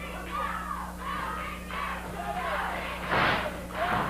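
Wrestling audience shouting and calling out, many voices overlapping, with a short louder burst of noise about three seconds in.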